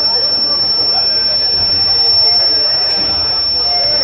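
Distant voices of players and spectators calling out around a football pitch, over a steady high-pitched whine.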